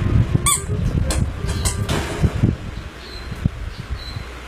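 A short high squeak about half a second in, followed by several sharp clicks and low thumps and rustling that die down after about two and a half seconds.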